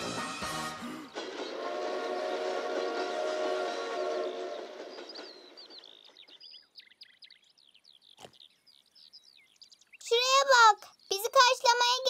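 Cartoon train horn: a held chord of several steady pitches lasting about four seconds, then fading out. Faint high chirps follow, then loud, wavering, high-pitched voice-like calls near the end.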